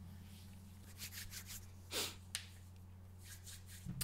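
Faint rubbing of hands over a face near the microphone: a few soft strokes, one slightly louder about two seconds in, over a steady low hum.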